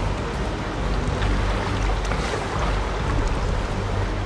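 Fast river rapids rushing steadily, with a low rumble of wind on the microphone.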